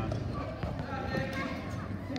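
A basketball bouncing on a hardwood gym floor, a few separate knocks, under spectators' voices.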